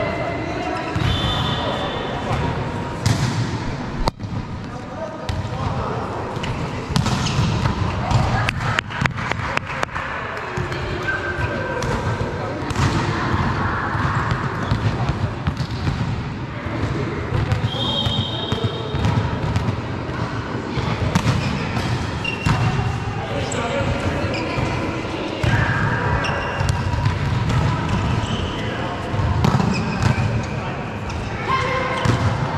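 Indoor volleyball game in an echoing hall: players' voices talking and calling, with the thuds of the ball being hit and bouncing on the floor, including a cluster of sharp knocks about eight to ten seconds in.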